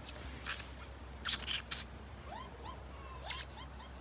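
Bush dogs giving a run of short, high rising squeaks, about seven in a second and a half, in the second half. Earlier come a few short hissy noises.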